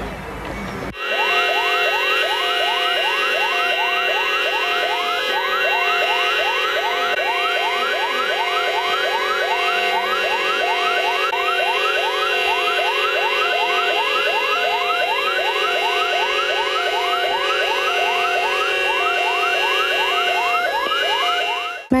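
A loud electronic warbling sound: a short rising chirp repeating evenly about two to three times a second over several held steady tones. It cuts in abruptly about a second in and stops abruptly near the end.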